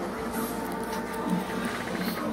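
CPAP machine running steadily, pushing air through a full-face mask.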